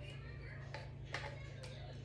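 A few faint taps and knocks of a tin can being shaken and scraped out over a ceramic baking dish as apple pie filling slides out, over a steady low hum.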